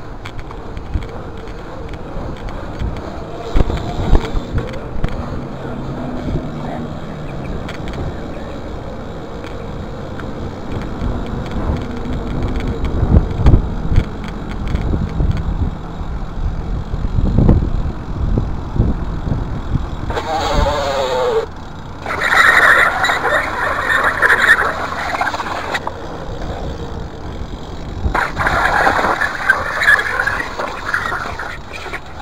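Mountain bike rolling over brick paving: a low rumble with scattered sharp knocks and rattles from the bike. In the last third a short falling call is followed by two loud, harsh stretches of calling.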